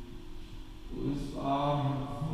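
Soft passage of live worship music: a low held note, then singing voices come in about a second in and grow louder.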